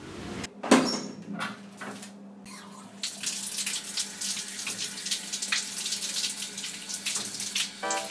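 Water running from a wall tap over hands, splashing unevenly into a basin as they wash. There is a sharp knock a little under a second in.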